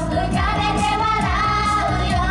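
Idol-pop song performed live: a group of young women singing into microphones over a pop backing track with a steady beat.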